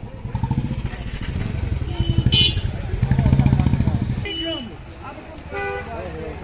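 Motorcycle engine running close by, growing louder toward about three to four seconds in and then dropping away. A short horn toot sounds about two seconds in, and people talk in the street.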